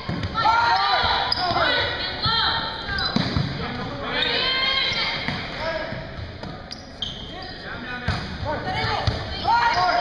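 Volleyball rally in an echoing gymnasium: players' voices calling out over the play, and the ball struck a few times with sharp slaps.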